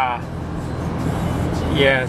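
Steady road and engine noise inside a moving car's cabin: a low, even rumble.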